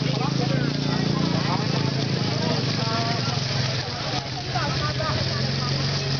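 A steady low engine drone runs throughout, with scattered voices of people talking nearby.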